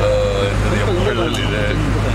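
A man speaking into press microphones amid a crowd, over a steady low rumble from a large vehicle's idling engine.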